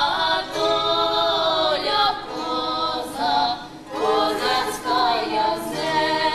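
Women's bandura ensemble singing a Ukrainian folk song together in several voices, in held phrases with short breaks between them.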